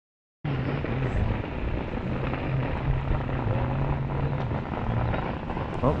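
A motorboat engine droning steadily over a broad hiss of wind and water, cutting in suddenly about half a second in.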